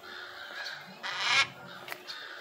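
A macaw giving one harsh, rasping squawk about a second in, lasting about half a second.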